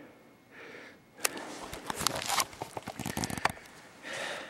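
A couple of faint breaths, then about two seconds of irregular rustling, crinkling and clicks as the handheld camera is handled and turned around toward the face.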